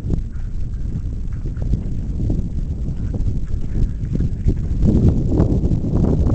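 Wind buffeting the camera microphone, with a steady low rumble and soft irregular thumps, growing louder about five seconds in.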